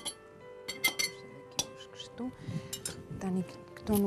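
A metal knife clinking and scraping against a glass bowl several times, in separate sharp strikes, over steady background music.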